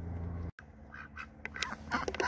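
Ducks calling in a quick run of short notes through the second half. Before that, a steady low hum cuts off about half a second in.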